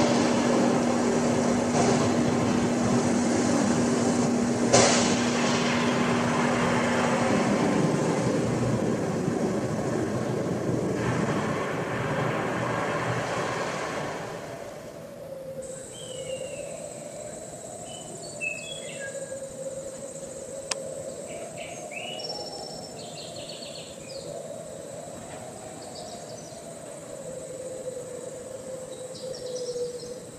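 Museum diorama sound effects: a loud, steady rumble with a couple of sharp cracks, which fades about halfway through into a quieter night ambience of chirping crickets and a long, slowly wavering whine.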